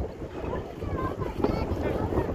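Wind buffeting the phone's microphone: a steady low rumble with gusty hiss, with faint voices in the background.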